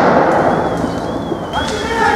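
Burning car fire: a loud rushing rumble left by a bang from the fire, fading over the first second and a half, with a wavering alarm tone in the background. A shout starts near the end.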